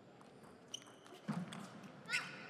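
Table tennis ball ticking off the paddles and table on a serve and the opening strokes of a rally: a few sharp, short clicks with a brief high ring, faint against the hall's background.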